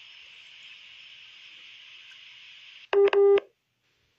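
A steady hiss, then about three seconds in a short, loud electronic beep sounding two or three times in quick succession. The sound then cuts off suddenly to dead silence.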